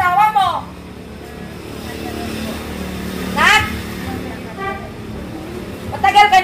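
A motor vehicle passing on a street, its engine and road noise swelling and fading away, with a brief voice call about three and a half seconds in.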